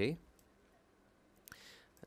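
A single computer mouse click about one and a half seconds in, followed by a short soft hiss; otherwise quiet room tone after the tail of a spoken word at the start.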